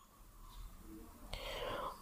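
A man's soft, faint intake of breath about a second and a half in, during a pause in his talk.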